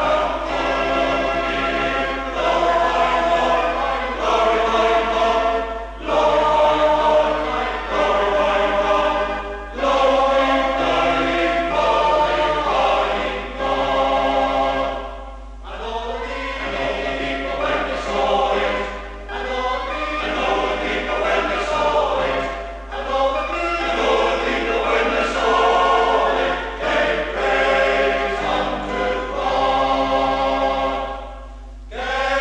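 Male voice choir singing a hymn-style song in sustained chords, phrase after phrase with brief breaths between, played from a 1973 cassette recording with a steady low hum underneath.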